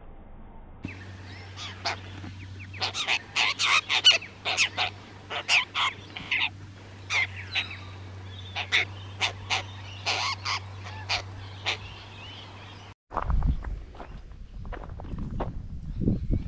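A group of apostlebirds calling: a long run of short, harsh calls in quick succession, over a faint low hum. Near the end the calls stop suddenly and wind rumbles on the microphone.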